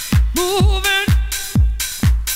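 Dance music played from vinyl through a DJ mixer: a steady four-on-the-floor kick drum, about two beats a second, with a sliding melodic line over it in the first second.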